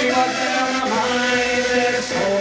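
A man singing a long held note over sustained synth chords from a Roland AX-Synth keytar.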